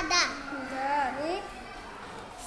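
A young child's voice: a drawn-out syllable ends just after the start, followed by softer murmured sounds that glide up and down in pitch, then it goes quieter near the end.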